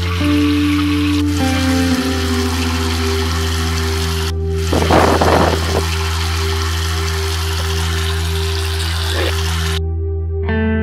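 Bathroom sink tap running, a steady rush of water over a sustained music score. There is a brief louder burst about five seconds in, and the water sound cuts off suddenly near the end.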